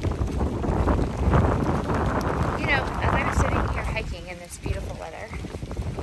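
Wind buffeting the phone's microphone in a low, dense rumble that eases a little after about four seconds.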